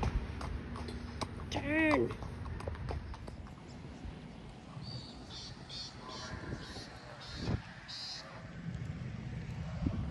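A ridden horse's hooves clopping, with one short rising-and-falling call about two seconds in.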